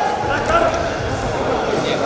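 Voices calling out in a large hall, over dull thuds of wrestlers' feet and hands on the mat as they hand-fight in a standing tie-up.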